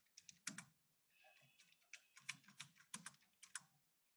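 Faint computer keyboard typing: a string of irregular key clicks with short gaps between them.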